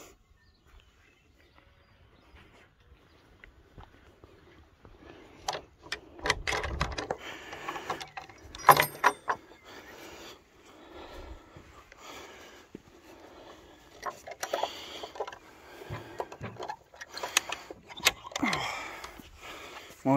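Metal chain latch on a wooden field gate clinking and rattling as it is handled, with irregular knocks. It starts about five seconds in, and the loudest, ringing clink comes about nine seconds in.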